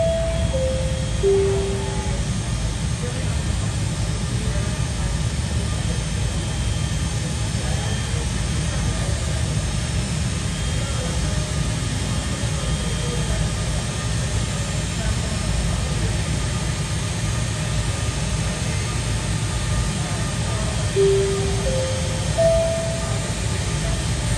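Steady low rumble of a jet airliner taxiing in on the apron. A three-note airport public-address chime falls in pitch at the start and a three-note chime rises in pitch near the end.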